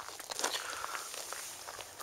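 Footsteps on gravel: a run of faint, irregular crunches.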